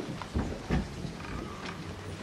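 Low thuds of a handheld microphone being handled, two of them inside the first second, over faint room noise.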